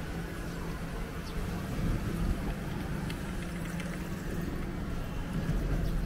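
Street ambience led by the steady low hum of a motor vehicle engine running, with no break in the sound.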